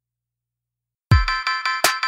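Dead silence for about a second, then a gospel hip-hop beat starts abruptly: a deep kick drum falling in pitch, a bright synth chord pulsing about six times a second, and a sharp snare-like hit just before the end.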